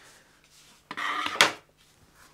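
Hard plastic parts of an RC truck being handled on a workbench: a short scrape and clatter with one sharp click, about a second in.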